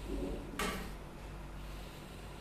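A pen scratching briefly on paper about half a second in, over a low steady room hum.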